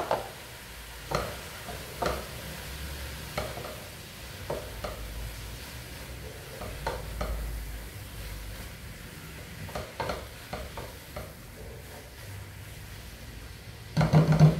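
Shredded carne seca and sautéed collard greens sizzling faintly in a pot while being stirred with a spatula, with a dozen or so short scrapes and taps of the spatula against the pot.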